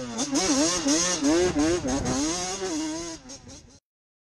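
Racing kart engine revving, its pitch rising and falling over and over, then fading out shortly before the end.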